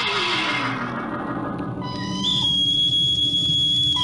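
Radio-drama sound effects: a falling glide as the opening music dies away over a low steady hum, then about halfway in a high steady whistle note begins and holds.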